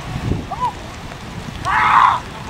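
Rain and wind on the microphone, with distant shouting voices from the field: a short call about half a second in and a louder burst of shouting near the end.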